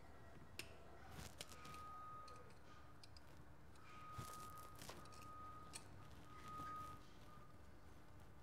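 Faint, scattered clicks and snips of cutters biting into and working a sealing washer off the threads of a brake-line banjo bolt.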